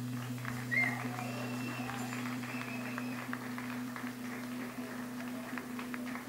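Faint scattered electric guitar notes and small clicks over a steady low hum from the stage amplifiers.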